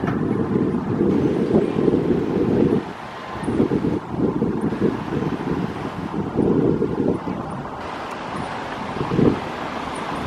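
Wind buffeting the camera microphone in gusts, a low rumbling rush that drops off about three seconds in, returns, and eases toward the end.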